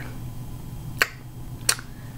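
Two short, sharp clicks, the first about halfway in and the second under a second later, against a quiet room.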